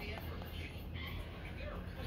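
Quiet whispered speech over a steady low hum.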